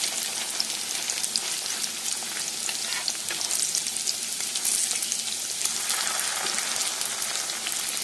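Patties of goose mince frying in hot oil in a pan: a steady sizzle with scattered small crackles and pops.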